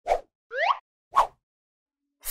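Cartoon sound effects on a scene change: a short pop, a rising swoop in pitch about half a second in, then a second short pop a little over a second in.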